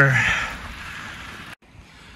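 Steady rushing noise of wind on the microphone and tyres rolling on a dirt trail from a moving mountain bike, cutting off suddenly about one and a half seconds in.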